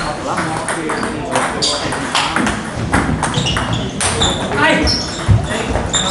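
Table tennis rally: a celluloid ball clicking against paddles and the table at an irregular pace, with voices murmuring in a large hall.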